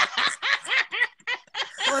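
Hearty male laughter in quick repeated bursts, with a brief break just before the end.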